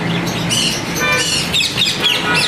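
Many caged pet birds in a shop chirping and squawking together in quick, high, rising and falling calls. About a second in comes a short, steady, horn-like tone.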